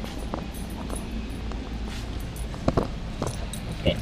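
Steady low background hum of a large store, with a few light clicks and a sharp double knock about three-quarters through as the action camera is handled and set down on the floor.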